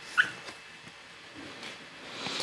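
A single brief high-pitched squeak just after a faint click, over quiet room tone with soft handling of a tarot card deck.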